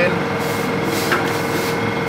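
Steady mechanical hum holding one constant tone, over an even background noise, with faint voices.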